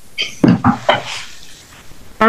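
A few short knocks and clatters in the first second, heard over a video-call microphone, followed by low background noise.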